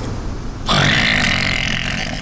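Cartoon character snoring in his sleep: a low, rough rumble, then a louder, airier stretch starting under a second in.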